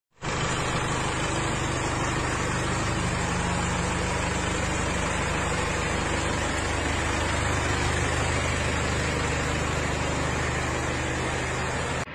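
Isuzu Elf minibus's diesel engine idling steadily, a low even rumble that stops abruptly near the end.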